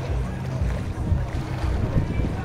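Wind rumbling unevenly on the phone's microphone, over the distant engine of a speedboat towing a banana boat.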